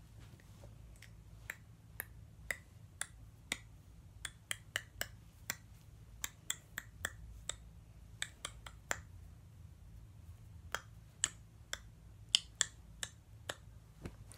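Sharp clicks and taps of hands and fingers knocking together during a fast finger-tutting routine. The clicks come about two a second at first, then quicker and more irregular, with a short pause about two-thirds of the way through.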